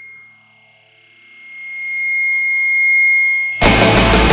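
Heavy rock song opening: a single held high tone with distortion swells up from quiet. About three and a half seconds in, the full band comes in loud, with drums, distorted guitar and bass.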